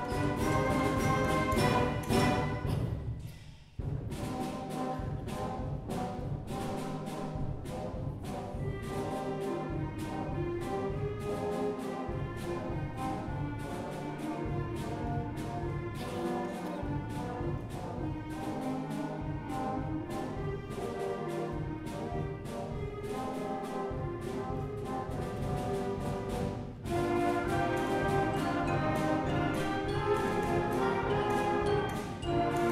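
Middle-school concert band of woodwinds, brass and percussion playing. A loud full-band passage breaks off about three seconds in, then a quieter section follows with steady percussion strokes, and the full band comes back loud near the end.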